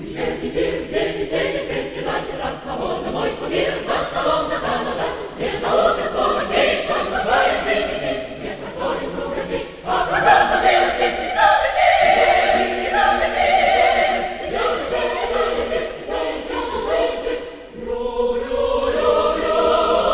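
Large mixed choir of men's and women's voices singing in full harmony. It grows louder about halfway through, drops back briefly near the end, then swells again.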